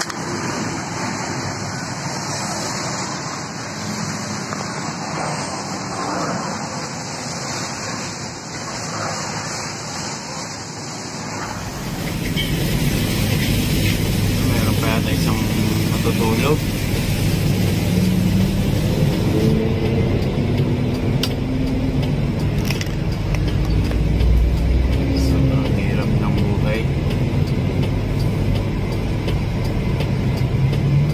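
Road noise of a moving vehicle heard from inside. It starts as a steady rushing noise, and about twelve seconds in it turns into a louder, lower engine and tyre rumble.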